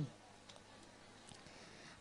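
Near silence: faint room tone with a few soft, short clicks.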